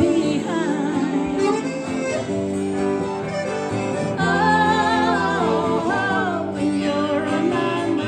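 Live country-folk band playing on after a sung line ends: strummed acoustic guitar, electric guitar and accordion, with a wavering reedy melody line coming to the front about halfway through.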